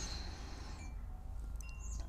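Faint chimes ringing: several short, clear tones at different high pitches sounding one after another, over a low steady hum.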